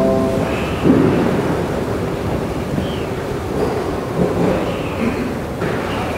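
Held musical notes stop right at the start, then a steady rushing rumble of room noise in the church, with a soft thump about a second in.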